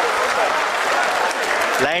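A room full of people applauding steadily, with a man's voice over a loudspeaker starting to speak at the very end.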